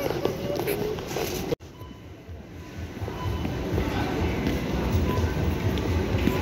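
Faint music and a voice in the first second and a half, then an abrupt cut to a low, irregular rumble of a shopping cart being pushed across a concrete warehouse floor.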